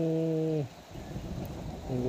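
A person's voice drawing out one long syllable, ending about two-thirds of a second in, followed by a low rumble of thunder.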